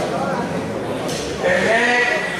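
Spectators' voices in indistinct chatter, with a louder, drawn-out, high-pitched voice calling out about one and a half seconds in.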